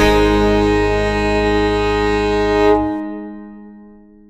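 The final held chord of a country ballad played by the band. The bass drops out suddenly near three seconds in, and the upper notes ring on and fade away.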